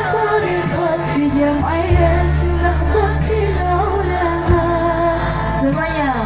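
Female voice singing an Islamic sholawat melody over band accompaniment with a deep, sustained bass line.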